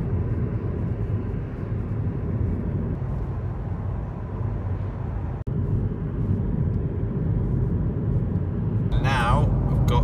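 Steady road and tyre noise inside the cabin of a Honda e electric car on the move, a low, even rumble. It drops out for an instant about halfway through.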